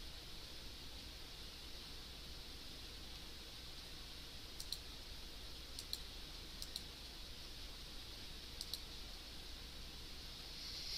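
Faint computer mouse clicks: four quick double clicks, each press and release close together, from about halfway through to near the end, over a steady low room hiss.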